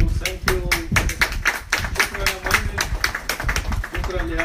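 A man speaking into a microphone, with a string of short sharp clicks or claps through it.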